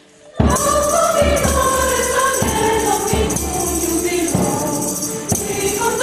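Mixed choir singing with tambourine accompaniment, starting abruptly about half a second in after a brief quiet, with a regular percussive beat under the voices.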